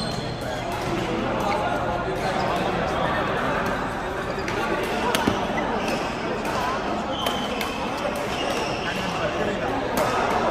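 Badminton rackets striking shuttlecocks, sharp hits at irregular intervals from this court and neighbouring ones, in a large hall, over players' voices and chatter.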